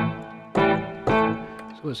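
Software grand piano playing chords, a new chord struck about every half second and left to ring.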